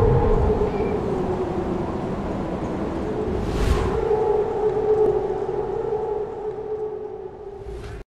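Ambient synth drone of intro music: a held, siren-like tone with a whoosh sweep about three and a half seconds in, fading out near the end.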